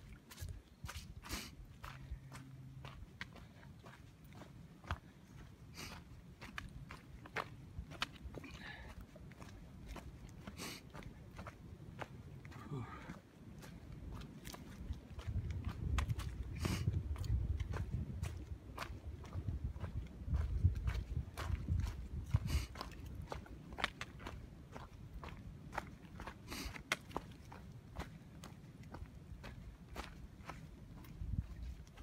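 Footsteps crunching and crackling through dry fallen leaves on a forest trail, an irregular run of sharp crunches, with a stretch of low rumble in the middle.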